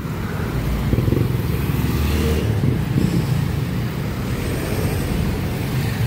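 Street traffic: motorcycle and motorcycle-sidecar tricycle engines running with passing cars, a steady low engine rumble that grows louder about a second in.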